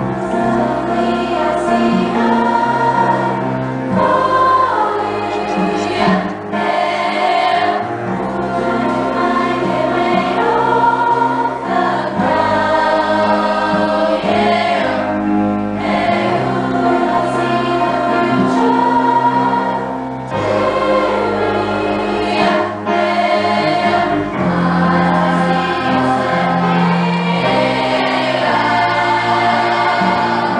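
A school girls' choir singing together in sustained phrases, with a few short dips between phrases.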